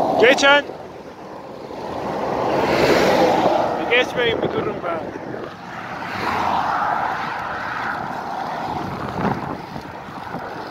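Wind rushing over a handlebar-mounted camera microphone on a moving bicycle, with road traffic that swells and fades about three and seven seconds in.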